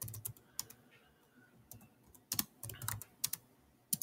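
Typing on a computer keyboard: quick irregular keystrokes in short runs with brief pauses, entering a compile command.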